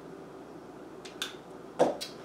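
Two short, sharp clicks from floral wire and hand tools being handled on a tabletop, the second one about half a second after the first and clearly louder.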